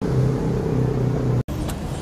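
A motor vehicle's engine runs close by with a steady low hum. It breaks off sharply about one and a half seconds in, giving way to quieter street traffic noise.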